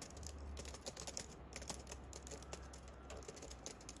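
Typing on a compact Bluetooth keyboard: a quick, irregular run of light plastic key clicks.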